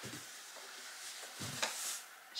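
Soft rustling of a cloth dust bag being pulled down off an aluminium Rimowa cabin suitcase, with a brief louder brushing sound a little past halfway.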